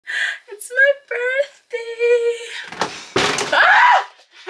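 A woman's high-pitched excited voice, squealing and laughing, then a thump about three seconds in, followed by a loud scream near the end, the loudest part.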